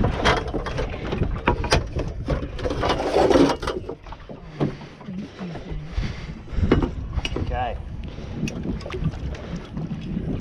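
Metal knocks and rattles as a pole is pulled from the rack along a small boat's inside hull and handled against the gunwale: many sharp clicks in the first few seconds, then quieter handling. Wind noise on the microphone runs under it.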